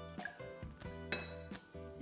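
A metal spoon clinking a few times against a glass measuring jug as vinegar is stirred into the brine, the sharpest clink about a second in. Soft background guitar music runs underneath.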